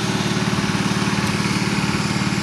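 A small gasoline engine running steadily at constant speed, a low even drone with a fast regular pulse.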